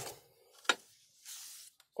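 Toyo TC90 glass cutter's wheel scoring a glass pane along a kerosene-wetted line: a sharp tick about two-thirds of a second in, then a short faint hiss as the wheel runs along the glass.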